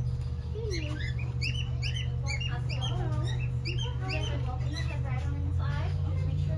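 Small birds chirping: a quick run of short, high, repeated calls, densest in the first half, over a steady low hum.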